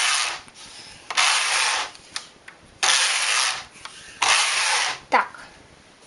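Knitting machine carriage pushed back and forth across the needle bed, knitting rows: four sliding strokes, each under a second, about a second and a half apart.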